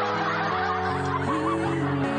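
A woman singing into a microphone over a keyboard backing track, her voice warbling quickly through the first second and a half over steady sustained chords.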